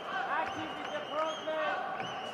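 Taekwondo fighters' feet thudding and squeaking on the competition mat as they bounce and kick, under voices calling out in a large arena hall.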